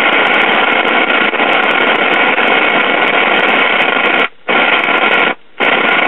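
Sears Silvertone model 5 AM tube radio's speaker putting out loud static that cuts out briefly twice near the end. The noise is the sign of silver migration in the IF transformers' built-in mica capacitors, which leak voltage from primary to secondary.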